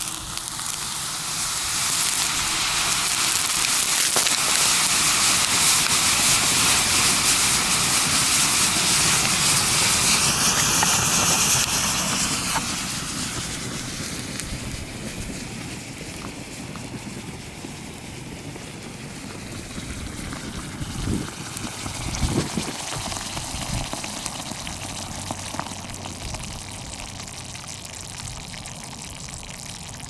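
A manganese dioxide and iron oxide thermite mix reacting to make high-carbon ferromanganese: a loud rushing hiss that builds over the first two seconds and holds for about ten seconds, then dies down to a softer hiss as the melt glows. A few sharp pops come about two-thirds of the way through.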